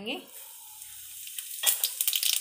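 Cumin seeds sizzling as they hit hot mustard oil in a kadhai: a steady hiss that breaks into louder crackling about one and a half seconds in.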